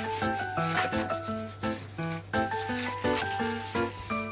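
Background music of short pitched notes with a steady beat, over a rasping scrape of a kitchen knife working on a farmed sea bream.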